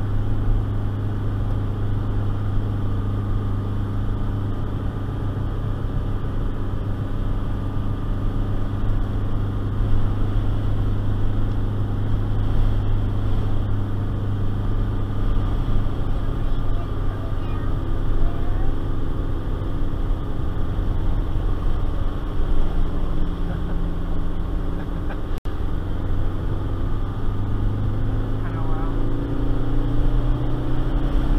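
Ford Festiva's stock 63 hp four-cylinder engine, heard from inside the car, pulling hard under load with a steady drone while towing a trailer up a steep grade. Near the end its pitch rises as it revs up and the car gathers speed.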